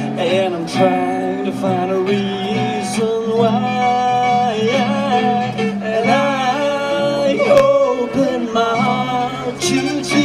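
Live performance of an original gospel Christmas song: a singer holding long, gliding notes over instrumental accompaniment with guitar.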